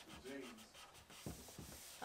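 Faint rubbing of a cloth rag wiping the plastic liner of a refrigerator door, with a few light knocks a little past the middle.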